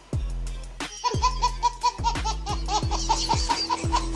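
Hip-hop style beat with deep bass-drum hits that drop in pitch, and from about a second in a baby laughing in quick repeated bursts over the music.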